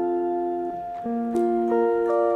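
Electric guitar with a clean tone playing C major triad inversions: one chord rings out and fades, then about a second in the notes of the next voicing are picked one after another and ring together.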